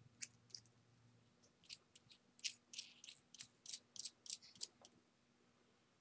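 Faint clicks and brief scrapes of small metal and plastic parts being fitted together by hand: the hardware of a banana jack terminal, its nut and black connecting piece, going onto the jack's threaded shaft. There are a couple of clicks at first, then a quick, irregular run of them from about a second and a half in until near the end.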